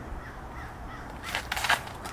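Shoes scraping and planting on a concrete tee pad during a disc golf drive: a quick run of three or four harsh scuffs about a second and a half in, the last one the loudest.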